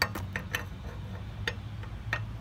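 Steel L-shaped lug wrench clicking against a steel wheel's lug nut as it is fitted on: about five light metallic clicks, irregularly spaced.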